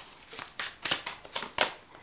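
Tarot cards being handled on a table: about five or six short, crisp snaps and flicks as cards are drawn and turned over.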